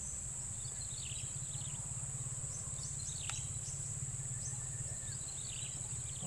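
Steady high-pitched drone of insects in a marshy rice field, with scattered short bird chirps and a single sharp click about three seconds in.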